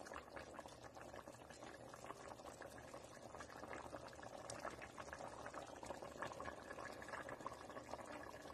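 Chicken-pineapple afritada stew bubbling at a faint, steady boil in a pot, with many small crackling pops from the bursting bubbles.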